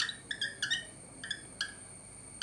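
Writing strokes on a blackboard, a quick run of short, high squeaks as the letters are written.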